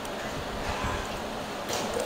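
Steady low background room noise, an even faint hiss, with a brief rise in high hiss near the end.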